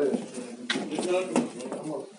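Indistinct voices talking in a small room, with a few sharp knocks about a second in as a wooden cabinet is searched.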